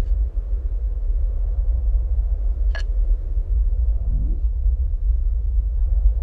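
Steady deep rumble, with a single sharp click about three seconds in and a brief low swell about four seconds in.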